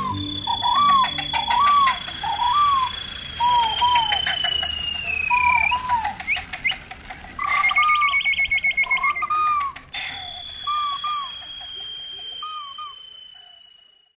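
Bird-like calls: short arched chirps repeated again and again, over a long thin high whistle that slides slowly down and breaks off about five seconds in, then comes back near ten seconds. There are two runs of rapid clicking, and the whole fades out at the end.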